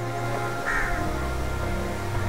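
A crow caws once, a short call about two-thirds of a second in, over a steady bed of soft sustained background music.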